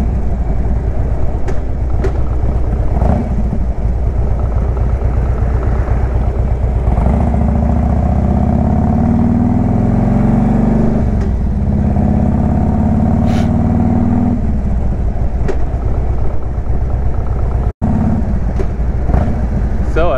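Harley-Davidson Road King Classic's V-twin engine and exhaust running on the move. The pitch climbs as the bike accelerates twice around the middle, with a short dip between. The sound cuts out for an instant near the end.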